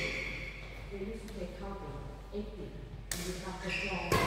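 A badminton racket strikes a shuttlecock once, sharply, about three seconds in, putting it into play. Indistinct voices are heard before the hit.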